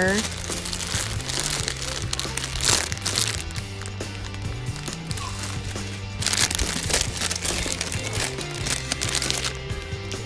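Clear plastic wrapping on packaged squishy toys crinkling in irregular bursts as they are handled, loudest about a third of the way in and again past the middle. Background music with a steady bass line plays underneath.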